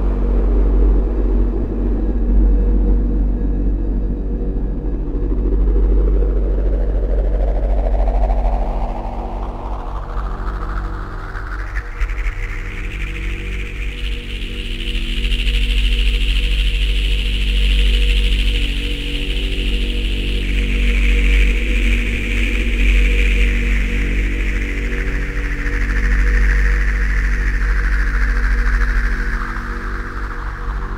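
Dark ambient noise music built from field recordings processed in the studio: a heavy low drone under steady low tones, with a band of filtered noise that slowly rises in pitch over about fifteen seconds and then slowly falls again.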